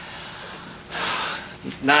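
A short, audible breath about a second in, a breathy hiss with no voice in it. A man starts speaking near the end.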